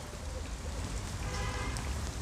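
Steady splashing of water from small cascades.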